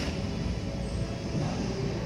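Steady low background rumble of gym room noise, with no distinct knock or clank.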